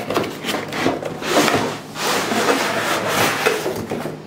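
Cardboard packaging scraping and rubbing as an inner cardboard tray is slid out of its box, in a few long rasping strokes.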